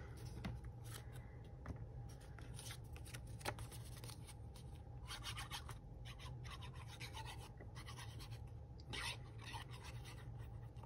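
Faint rustling and light scratching of thin paper being handled, as a craft-glue bottle's fine metal tip is drawn across the back of a paper cutout, with scattered small clicks and one sharper tap about three and a half seconds in.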